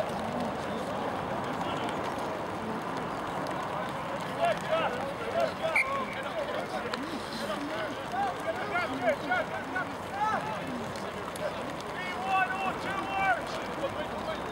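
Scattered shouts and calls from rugby players and onlookers over a steady outdoor background of voices, with clusters of several overlapping shouts about four seconds in, again around nine to ten seconds, and near the end.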